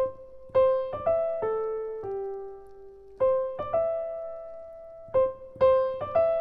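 Piano playing a slow intro of single high notes, each struck and left to ring and fade, in a short figure that repeats about every two and a half seconds.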